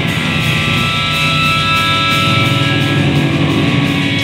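Live blues-rock trio playing: electric guitar, electric bass and drum kit. The guitar holds long sustained notes over the bass and drums.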